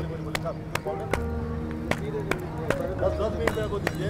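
One person clapping hands in a slow, even rhythm, about ten claps at roughly two and a half a second, over background music with long held notes.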